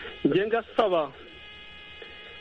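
A voice speaking briefly over a narrow, phone-quality line, then a pause in which a steady high-pitched electrical buzz on the line is heard.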